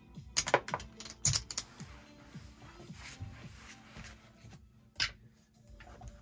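Casino chips clicking as they are handled and set down on a felt blackjack table: a cluster of sharp clicks in the first couple of seconds and another about five seconds in, with music underneath.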